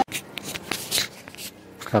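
Faint scattered small clicks and rustling, with a man starting to speak at the very end.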